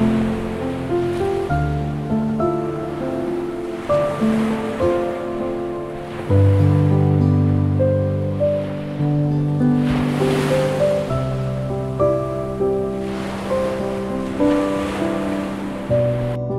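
Calm background music of slow, held chords over the sound of surf washing onto a sandy beach. The waves swell and fade a few times, most strongly about ten seconds in.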